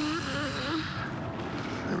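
A person's voice murmuring briefly over a steady hiss, which continues after the voice stops.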